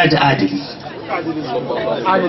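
Only speech: a man talking into a microphone, amplified.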